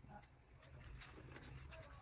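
Near silence: room tone with a faint low hum and a few soft ticks.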